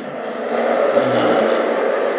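A steady rushing noise, about as loud as the talk around it, filling the pause in speech and ending just after it.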